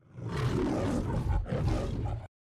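The MGM logo's lion roar: a lion roaring twice, a long roar and then, after a brief break about one and a half seconds in, a shorter second one.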